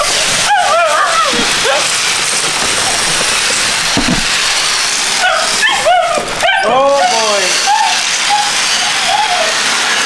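Livestock guardian dog puppy whining and yipping: short high rising-and-falling cries, a few about half a second in, then a quick run of them through the second half, the pup calling for its owner. A steady hiss fills the gap between.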